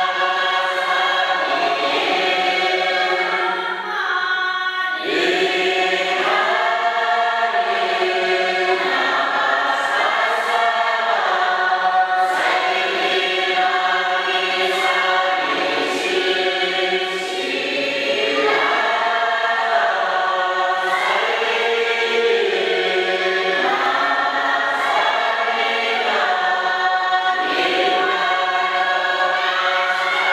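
A choir singing a slow piece, the voices holding long notes together and moving to a new chord every second or two.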